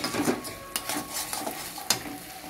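Spatula stirring and scraping a thick coconut paste around a steel wok, with scattered scrapes and clicks against the metal and one sharper knock near the end.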